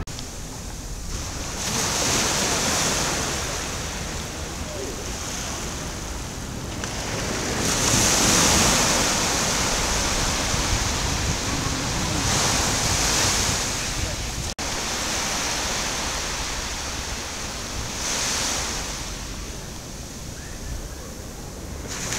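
Sea surf breaking on a sandy beach, the wash rising and falling in repeated surges every few seconds.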